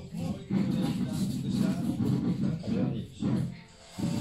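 Indistinct voices together with background music.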